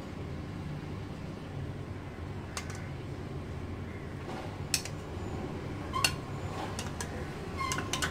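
A metal spoon clinking lightly a few separate times against a small cup and a pot as food colouring is spooned over rice, over a steady low hum.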